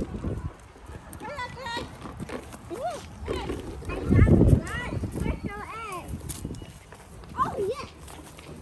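Several children's voices calling out and exclaiming in short rising and falling bursts on an open lawn, with no clear words. Low thumping of footsteps and handling near the microphone, loudest about four seconds in.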